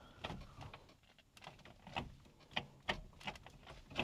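Gear lever of a Toyota AE86's manual gearbox, fitted with a short shift kit, being rowed through the gears: a string of faint, short clicks and clunks as it moves through the gate and into each gear.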